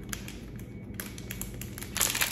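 Fingernails picking and tapping at a small plastic packet, a few faint clicks as it is worked open.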